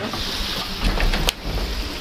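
Beef tenderloin pieces sizzling steadily as they sear in a hot sac pan while being stirred with a wooden spatula. A brief low rumble comes a little past the middle.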